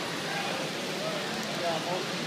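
Steady background chatter of many voices, with a nearby voice saying "I'm uh" near the end.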